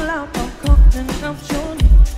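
Live pop band music with a female lead vocal briefly at the start, over a heavy, bass-boosted kick drum that hits about once a second.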